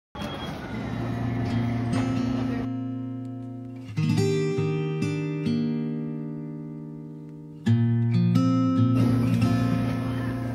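Background music: an acoustic guitar intro of slow chords that ring out and fade, with new chords struck about four seconds in and again nearly eight seconds in.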